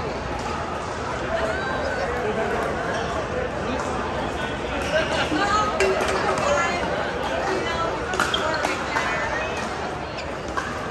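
Overlapping chatter of many players echoing in a large indoor pickleball hall, with several sharp pops of paddles striking plastic balls on nearby courts, most of them in the second half.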